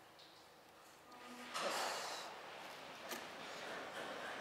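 A man breathing out hard, a short snort-like exhale about a second and a half in, followed by a faint click.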